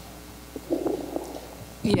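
A pause between speakers picked up by a meeting-room microphone: a steady low hum, a brief faint murmur about two-thirds of a second in, then a man starts speaking near the end.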